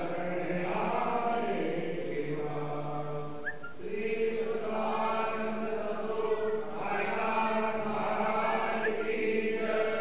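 A group of voices chanting a devotional prayer in long held notes, with a brief pause about three and a half seconds in.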